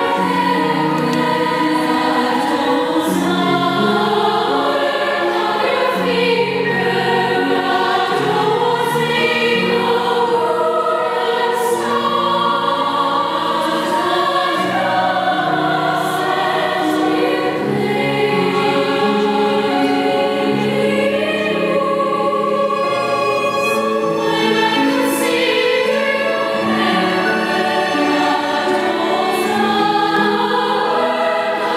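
A choir of young girls singing a piece in several simultaneous harmonised parts, an example of polyphony. It is one continuous stretch of singing with no pause.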